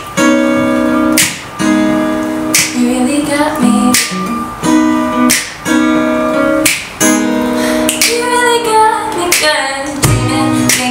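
Two acoustic guitars strumming chords over a cajon beat, with sharp accents roughly every second and a half. A woman's voice sings briefly near the end.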